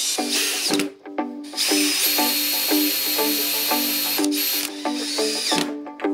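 Cordless drill with a screwdriver bit driving a screw into a plywood block, its motor whining in three runs: a short one at the start, a long steady one from about a second and a half to past four seconds, and a brief one near the end. Background music with plucked notes plays throughout.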